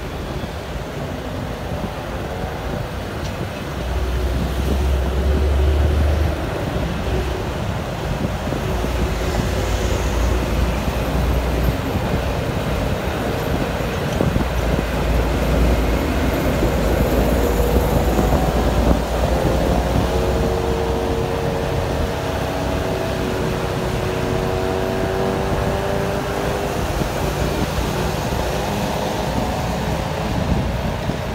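Engine and road noise of a vehicle driving in city traffic, heard from on board: a steady low rumble, with the engine note rising slowly in the second half as it picks up speed.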